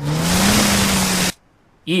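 Race car engine revving with a loud rush of tyres spinning and throwing sand as the car pulls away. The engine note rises briefly, then holds, and the sound cuts off suddenly just over a second in.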